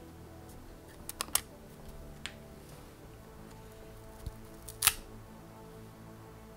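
Protective plastic film being picked at and peeled off a small plastic tattoo battery pack by hand: a few light clicks about a second in, another a second later, and a louder click near the end.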